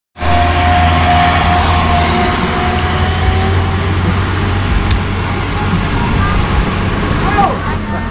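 Diesel engine of an Isuzu Elf minibus running close by, a steady low rumble that eases slightly toward the end.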